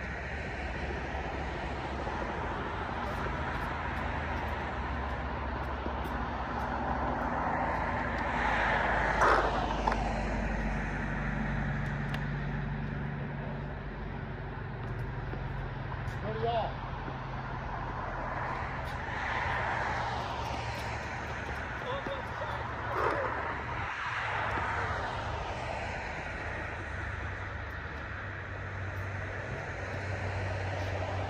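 Steady road-traffic hum that swells three times as vehicles pass, with a few short, sharp knocks.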